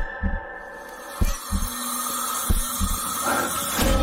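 Suspense score from a film trailer: a sustained high drone over deep, paired low thuds about every second and a quarter, like a slow heartbeat.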